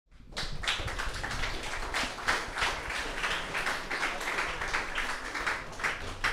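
Audience applause: many hands clapping, starting about half a second in and thinning out near the end.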